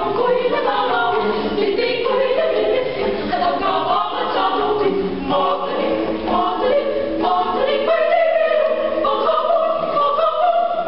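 Mixed choir of men's and women's voices singing a cappella in several parts, an arrangement of a Filipino folk song, continuous throughout.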